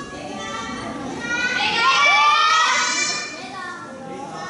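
A group of children shouting and calling out excitedly, high-pitched voices swelling to their loudest in the middle and fading toward the end.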